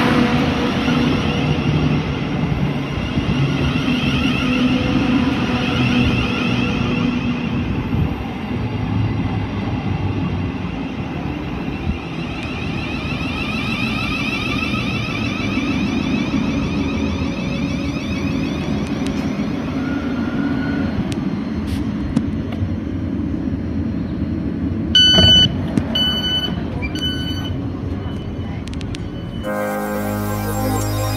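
Thameslink Class 700 (Siemens Desiro City) electric multiple unit alongside the platform: a steady hum and rumble of the train, with a whine that slides in pitch through the first half. Near the end, three short pitched beeps sound about a second apart.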